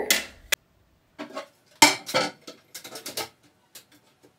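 Hard plastic clicks and knocks as a bidet attachment plate and toilet seat are set down onto a porcelain toilet. The sharpest knock comes about two seconds in.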